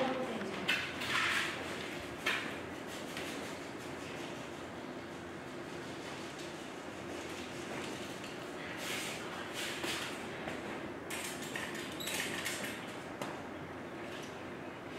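Quiet room hum with a few short rustles and scrapes from cake-decorating tools and a plastic icing pouch being handled at a table.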